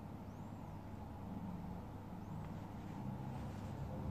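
Steady low background hum, with a few faint high chirps.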